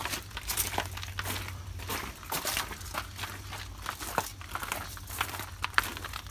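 Irregular rustling and crackling with scattered small clicks, the handling noise of a handheld phone being carried while walking, with footsteps mixed in.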